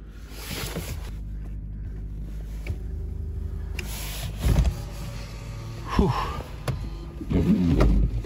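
A 2018 Honda Accord's power window motor running steadily for about four seconds. Then the windshield wipers sweep across frosted glass, with a thump at each stroke about a second and a half apart. The wipers are not clearing well.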